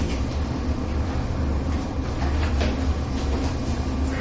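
Steady low room hum, with a few faint short scratches of chalk on a blackboard in the first part.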